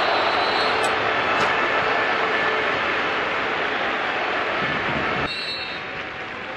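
Stadium crowd cheering after a goal, slowly fading, then cut off about five seconds in to a quieter crowd murmur.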